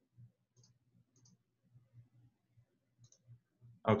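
A few faint computer-mouse clicks over near silence, with a soft, low pulsing hum underneath.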